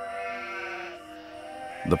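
A sheep bleating once, a short wavering call in the first second, over soft background music with long held notes.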